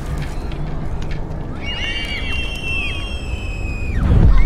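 Soundtrack of a nature film playing in a cinema: a steady low rumble, joined about halfway through by high chirping bird-like calls and a long held whistling tone.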